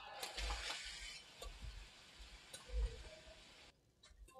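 Badminton court sound: sharp racket-on-shuttlecock hits about once a second and dull footfalls on the court, under a hiss that is strongest in the first second. The sound cuts off abruptly just before the end.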